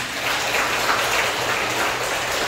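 Audience applauding, starting suddenly and holding steady.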